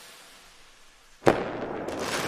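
Intro-template sound effect: a fading whoosh tail, then a sharp impact hit about a second and a quarter in, followed by a crackling, sparkly tail that slowly dies away.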